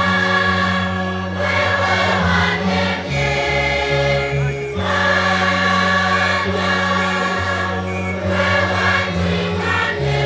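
Choir singing a hymn over held bass notes that change every second or two.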